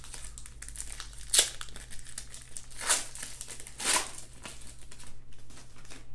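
Foil wrapper of a Panini Legacy football card pack crinkling and crackling as it is pulled off the cards and handled. There are three louder crackles, about one and a half, three and four seconds in.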